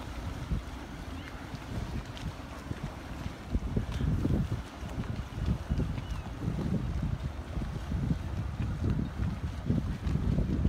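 Wind buffeting the microphone in uneven gusts, a low rumble that grows stronger about three and a half seconds in.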